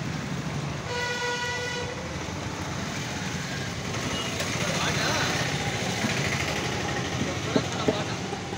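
Two sharp chops of a heavy cleaver striking the wooden chopping block near the end, over a steady background of road traffic. A vehicle horn toots once for about a second, starting about a second in.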